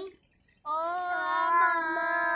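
Children singing a song without words heard here: a brief pause of about half a second, then one long held note.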